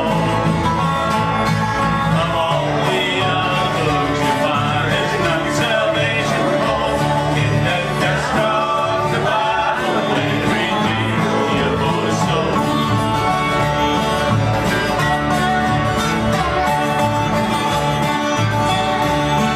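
Live acoustic bluegrass band playing steadily: acoustic guitars, upright bass and a slide resonator guitar.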